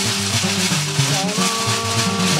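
A large Malian ngoni harp-lute plucked in a repeating low pattern, with steady rattling percussion over it. About one and a half seconds in, a long held tone enters.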